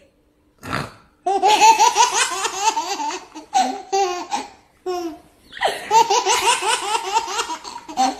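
A baby and a young boy laughing hard together in repeated ha-ha bursts, with short breaks for breath between them.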